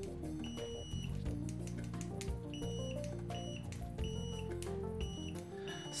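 Aneng M1 multimeter's continuity buzzer giving about six beeps of varying length on one steady high tone as the test probe tips are touched together. The first beep, about half a second in, is the longest. The beeper is fairly audible but slow and laggy to respond on the stock leads. Background music plays underneath.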